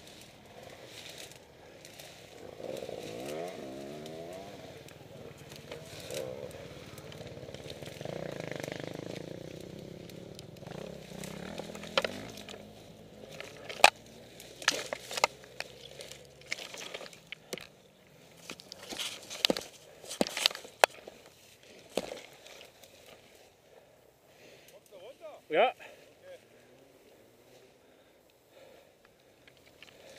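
A small engine revving up and down and running for several seconds, then fading. A scatter of sharp knocks and clicks follows.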